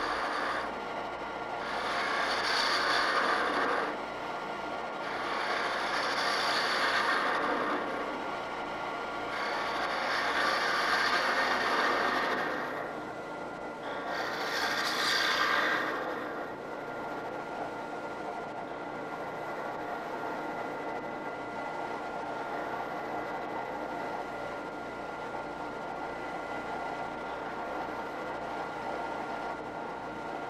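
A spindle gouge cutting a spinning padauk blank on a wood lathe. Four louder cuts of a few seconds each come in the first half, then lighter, steadier cutting over the lathe's even running.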